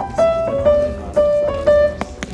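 Piano playing a melody, one note at a time, each note struck cleanly.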